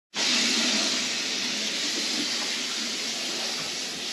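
Bathroom sink tap running steadily, water pouring into the basin.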